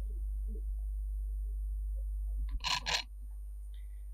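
Low steady electrical hum of an auditorium sound system through an open microphone, with a brief rustling noise about two and a half seconds in, after which the hum drops a little.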